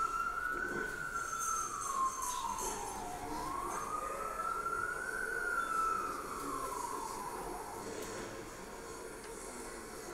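A wailing siren, its single tone sweeping slowly up and down, about four seconds per rise and fall.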